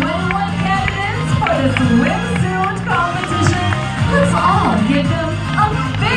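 Loud music with a steady beat and a bass line, with a voice carrying a gliding melody over it.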